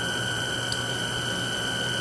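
Steady mechanical hum and hiss with a faint high whine over it, from an electric-motor spintron rig turning a Norton motorcycle engine, running at constant speed.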